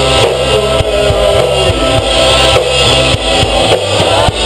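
Rock band playing loudly live: electric guitars, bass guitar and drum kit.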